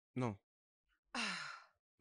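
A short spoken 'non', then about a second in a long, breathy sigh that falls in pitch.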